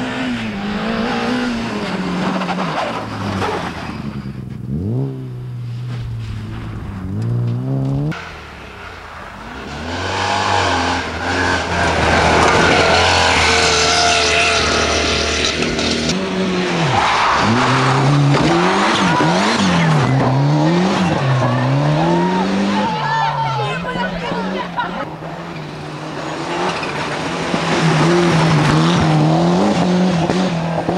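Rally car engines revving hard as cars pass one after another, the revs climbing and dropping sharply through gear changes and lifts, with heavy tyre and gravel noise.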